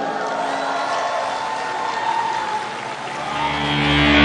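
A large crowd applauding and cheering. Near the end, a band's amplified music swells in over it.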